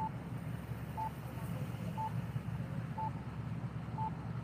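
A short, high electronic beep repeating once a second, over a steady low rumble of engines and traffic.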